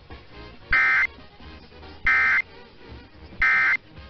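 Emergency Alert System end-of-message data bursts: three short, identical warbling digital tone bursts, each about a third of a second long and about a second and a half apart, marking the end of the alert. They are heard over AM broadcast radio through a web SDR receiver, with faint radio noise between the bursts.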